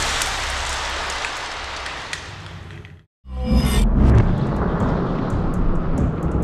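The dying noise of a car-to-car crash-test impact, with a deep rumble underneath, fading over about three seconds and cutting off abruptly. After a short silence, a dramatic music sting comes in with a swoosh, deep bass and scattered ticks.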